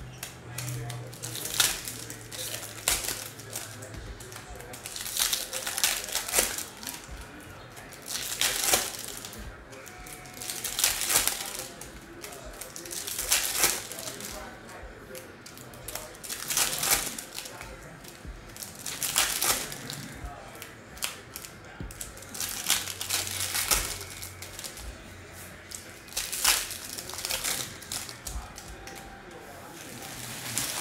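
Baseball card packs being opened and the cards handled: foil pack wrappers crinkling and tearing and cardboard cards rustling, in short bursts every one to three seconds.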